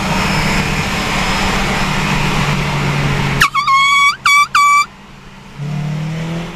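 Engine and road noise inside a moving car for about three seconds. Then, after an abrupt change, a car horn honks three times at a high pitch, the first honk longest and the other two short.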